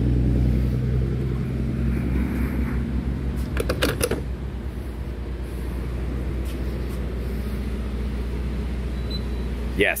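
Gas pump dispensing fuel into a car with a steady hum, then a run of clicks and clunks about four seconds in as the nozzle is handled. A fainter steady hum follows.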